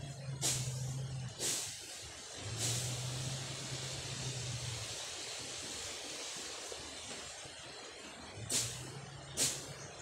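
Machete slashing through weeds and grass: sharp swishing cuts about once a second, two early on and two more near the end. Between them is a steady hiss, with a low hum coming and going.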